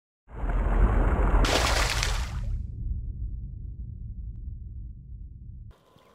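Logo sting sound effect: a sudden deep boom with a rush of noise, a bright hiss for about a second, then a low rumble slowly fading before cutting off near the end.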